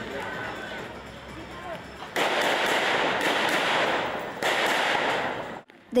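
A rapid series of gunshots, about two a second, starting about two seconds in with echoing tails, breaking off briefly and then cutting off abruptly near the end. Faint voices sit under the quieter opening.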